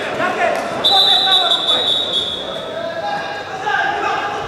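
Referee's whistle blown in one long, steady high blast of about three seconds, stopping the bout, over voices shouting in the arena.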